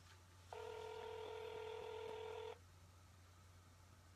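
Telephone ringback tone heard through the phone's speaker: one steady ring about two seconds long, starting about half a second in. It is the sign that the called line is ringing and has not yet been answered.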